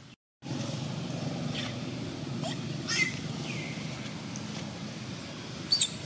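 A steady low rumble with a few short high chirps falling in pitch, and near the end two sharp, loud smacking clicks from a long-tailed macaque mother lip-smacking, a friendly, reassuring gesture in macaques.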